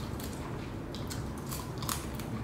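Eating at the table: chewing, with three short crisp clicks as cooked seafood is pulled apart by hand and bitten.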